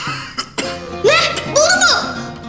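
A person's voice: a throaty, cough-like sound, then two drawn-out wordless vocal exclamations, each rising then falling in pitch, over background music.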